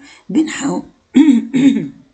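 Speech only: a person's voice saying short syllables in two spoken stretches.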